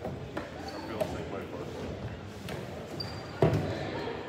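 A basketball bouncing on a hardwood gym floor, several separate bounces with the loudest about three and a half seconds in, over background chatter of voices.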